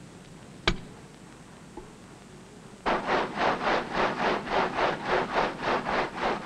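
A single sharp knock about half a second in, then a quiet stretch. From about three seconds in, a stone gang saw runs, its blade frame working back and forth in a steady grinding rhythm of about three strokes a second.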